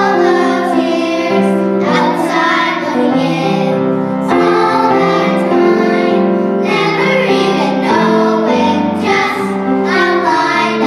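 A group of young girls singing a pop song together into microphones, over steady instrumental accompaniment.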